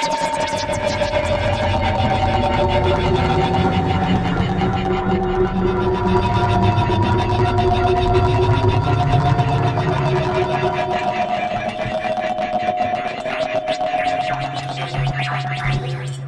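Algorithmic electroacoustic computer music synthesized in SuperCollider. Several held tones step from one pitch to another over a low drone, all on a dense, rapidly pulsing texture. A new low held tone comes in near the end.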